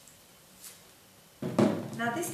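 Quiet room tone with one faint, brief rustle of the peeled paper masking-tape piece being handled about half a second in; a woman starts speaking near the end.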